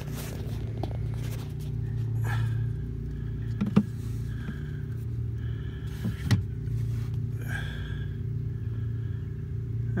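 Steady low hum of the pickup truck running, heard from under the dashboard in the cab, with two sharp knocks, about a third and two thirds in, and light rustling from handling near the dash.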